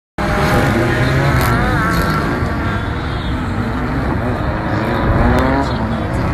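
Several drift cars' engines revving hard around a snow-covered circuit, their pitch rising and falling as the cars slide through the corners.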